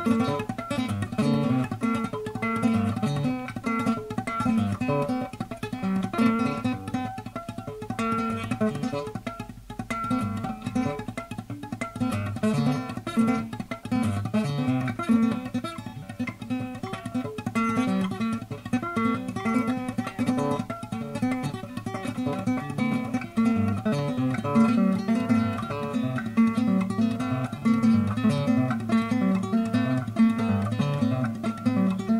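Solo improvised guitar: dense, irregular plucked notes and strums with no steady beat, thinning briefly about ten seconds in before carrying on.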